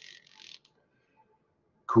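A short, faint hiss of breath drawn in during a pause in speech, then quiet. A man's voice starts again near the end.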